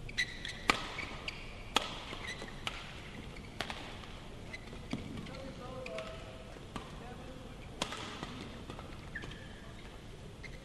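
A badminton rally: rackets strike the shuttlecock with sharp cracks about once a second, the loudest two in the first two seconds. A few short, high squeaks from shoes on the court mat are heard.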